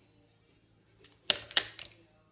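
A few sharp plastic clicks and clatters of makeup being handled, starting about a second in: a compact and a mascara tube are set down and picked up.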